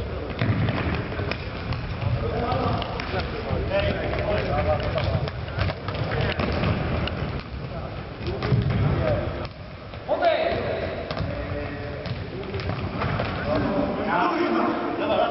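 Indoor futsal play in a sports hall: players shouting and calling to one another, mixed with scattered thuds of the ball being kicked and struck.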